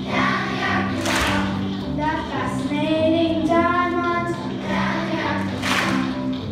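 Children's choir singing with instrumental accompaniment.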